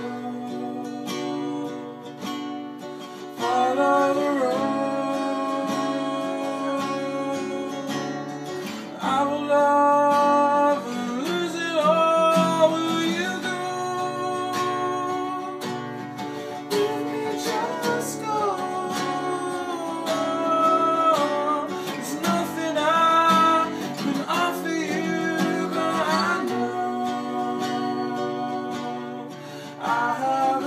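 Two acoustic guitars strummed together as a duet, with a man's and a woman's voices singing over them. The guitars play alone for the first few seconds, then the singing comes in.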